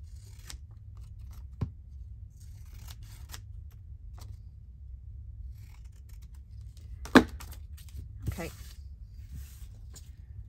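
Large scissors snipping through paper in short cuts. A sharp knock about seven seconds in, the loudest sound, and a smaller one just after eight seconds.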